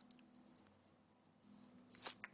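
Near-silent room tone with a faint low hum and a few brief, faint scratchy rustles, the strongest near the end.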